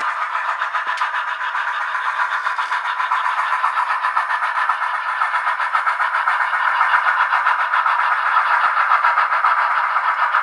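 Soundtraxx Tsunami2 sound decoders in HOn3 brass D&RGW 2-8-2 steam locomotives playing quick, even exhaust chuffs through their small speakers, thin with no deep bass, growing a little louder toward the end as the locomotives come past.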